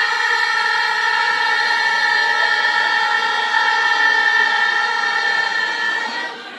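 A group of women's voices holding one long sung note together in unison for about six seconds, breaking off near the end.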